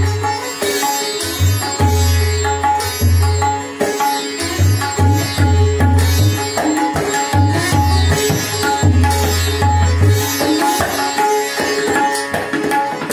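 Sitar and tabla playing together: a plucked sitar melody with ringing strings over quick tabla strokes, with deep bass-drum tones from the larger tabla drum that come and go.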